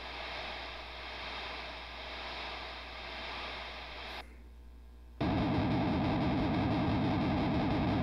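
Kemper Profiler profiling test signals played through a high-gain guitar preamp rig while it captures the amp's tone. First a hiss that swells and fades about once a second, a short drop about four seconds in, then from about five seconds a louder, rough, fast-warbling distorted buzz.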